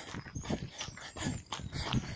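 A tired runner's heavy, rapid breathing: short irregular puffs of breath, panting from the exertion of a long run.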